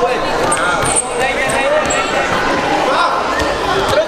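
Indistinct overlapping voices of spectators and coaches in a sports hall, with a few dull thumps, one about a second in.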